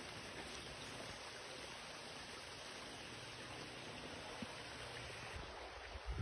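Shallow creek water running over rocks: a faint, steady rush.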